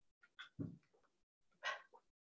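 A dog giving three short, faint barks in the background, two close together and one about a second later.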